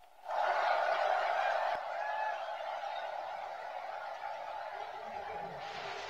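Large indoor crowd applauding at the end of a speech, starting about a third of a second in, loudest for the first couple of seconds and then continuing a little lower.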